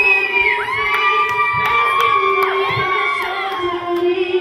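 A crowd of voices shouting and cheering at a live hip-hop show: several long yells overlap, each rising, holding and falling away.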